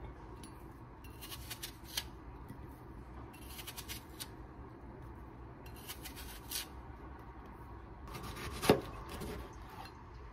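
Kitchen knife slicing apple and tomato on a plastic cutting board: short bursts of crisp cutting strokes every couple of seconds, with one sharper knock of the blade near the end.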